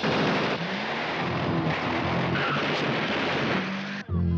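A car engine running hard as the car pulls away, heard as a loud, dense, steady noise with a few brief rising tones.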